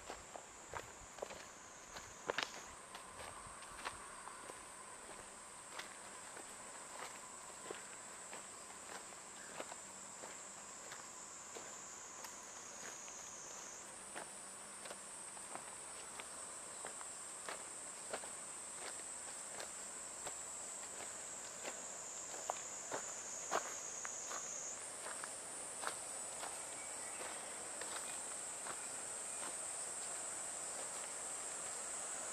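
Footsteps crunching along a leaf-covered, gravelly old railway track bed, about one step a second. Behind them a steady high-pitched insect drone slowly sinks in pitch and jumps back up, three times.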